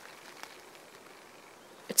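Faint, steady outdoor background hiss in a quiet forest, with one soft click about half a second in and a voice starting at the very end.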